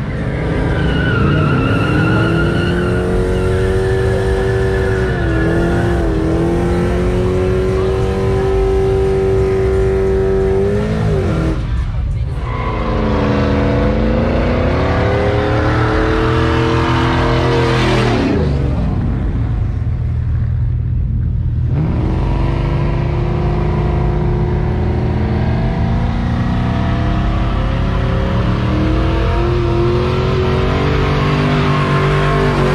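A pickup truck's engine revving hard and held high during a burnout, with tyres squealing. The revs fall away and climb back twice, about twelve and twenty seconds in, then rise steadily toward the end.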